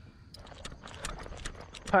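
Footsteps on a paved path: a run of light, quick taps.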